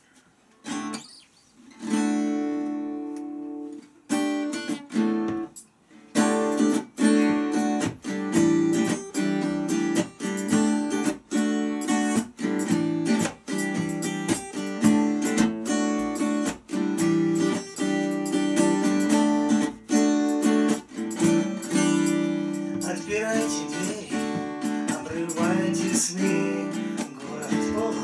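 Acoustic guitar strummed as a song's instrumental introduction: a few separate chords ring out in the first seconds, then a steady strummed rhythm starts about six seconds in.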